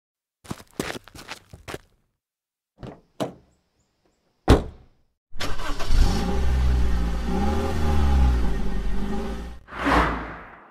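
A few clicks and knocks, then a single heavy thump, then a car engine starts and runs for about four seconds, rising and falling in pitch as it revs, before fading away.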